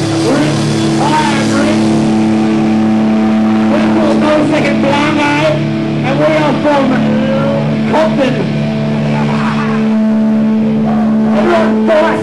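Amplified guitar and bass from a live rock band holding a steady, ringing chord, with voices shouting over it.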